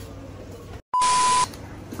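A loud, steady single-pitch electronic beep lasting about half a second, starting about a second in. It is cut in at an edit just after a brief dropout to silence, like a bleep tone added in editing. Faint shop ambience sits before and after it.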